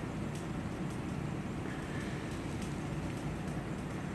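Steady low background rumble with faint scattered clicks.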